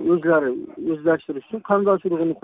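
Men's voices shouting and talking loudly in a crowd.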